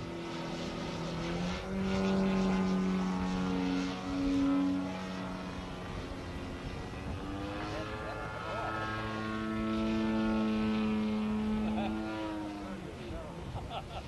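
Propeller-driven radio-controlled aerobatic model airplane flying overhead, its engine note slowly rising and falling in pitch and loudness as it manoeuvres, loudest in two long passes.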